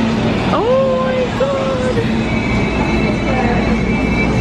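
Busy indoor shop din, a loud steady rumble of crowd noise and hum, with a voice rising and then holding long drawn-out tones about half a second in, and faint steady high tones in the second half.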